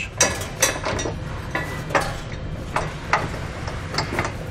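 Several irregular small metal clicks and taps as a conical tooth washer is slipped over the threaded end of a carriage bolt and handled against the steel hitch, over a steady low background hum.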